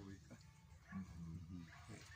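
A quiet pause in a man's speech: a few faint, brief voice sounds about a second in, over a steady low background hum.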